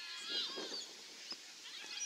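Several high-pitched voices shouting and calling out over an open field, loudest in the first second, with more calls starting near the end and one short knock between.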